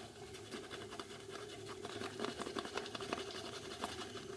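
Shaving brush working lather over a day's stubble on the face and neck: faint, irregular soft scratching with many small ticks from the bristles and lather against the skin.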